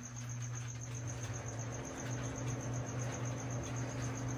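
A steady low hum with a faint, rapid, evenly pulsed high-pitched chirping running through it, cricket-like.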